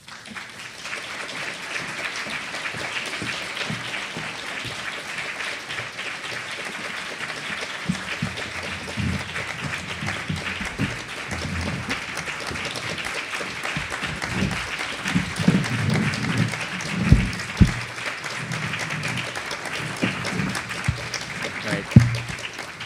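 Audience applauding without a break for about twenty seconds. From about the middle on, low bumps and knocks sound under the clapping.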